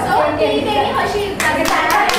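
Women's voices in a group, with a few sharp hand claps in the second half, part of fugdi dance practice.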